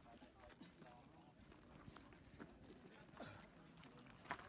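Near silence: faint voices, with a few soft knocks scattered through.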